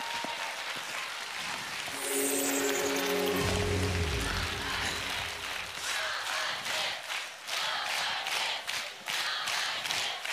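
Studio audience applauding and cheering. A short burst of show music with a falling low tone comes in about two seconds in, and the clapping stands out more clearly in the second half.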